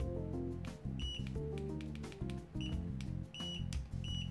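Aneng M1 digital multimeter's continuity beeper giving three short high beeps as the test lead tips touch, over background music. The beeper is slow to respond and latches on: a laggy continuity test that better leads do not improve.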